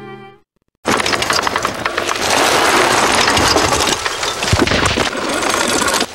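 A short tail of string music ends, and a moment later a loud, crackling rush begins: a mountain bike hurtling down a steep, loose dirt slope, its tyres skidding and rattling over gravel and stones.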